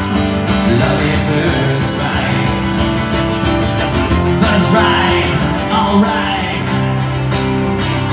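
Acoustic guitar playing a rock song unplugged, a steady run of strummed chords.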